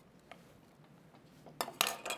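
Quiet handling of sliced zucchini and a chef's knife on a wooden cutting board, with a faint click early and two sharp clicks close together near the end.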